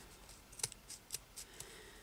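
Scissors cutting through a strip of lace stuck on double-sided carpet tape: a few short, faint snips, spaced about half a second apart.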